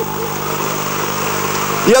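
A steady low hum made of several held pitches, with faint wavering sounds above it; a man's speech starts at the very end.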